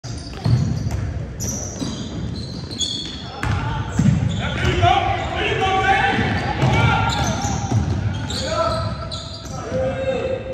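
Indoor basketball game: a basketball bouncing on a hardwood gym floor and sneakers giving short, high squeaks, mixed with shouting voices of players and spectators, all echoing in a large hall.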